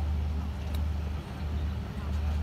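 A single short, sharp click about three quarters of a second in: a wedge striking a golf ball on a chip shot. Under it runs a steady low rumble.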